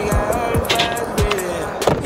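Hip-hop music in a stretch without vocals: a beat with deep bass notes that slide downward, and sharp hits about a second apart.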